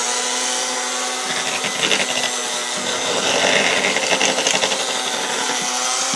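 Electric hand mixer running steadily, its beaters churning through mashed potatoes in a stainless steel pot, with a rougher churning sound in the middle stretch.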